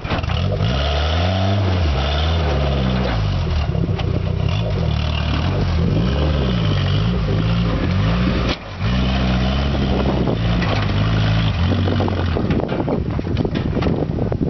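Suzuki Samurai's engine revving up and down over and over as it crawls up a rutted dirt slope, its pitch rising and falling every second or two, with a brief drop about eight and a half seconds in.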